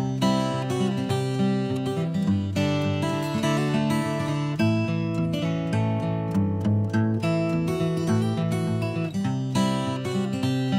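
Background music: a strummed acoustic guitar playing steady chords.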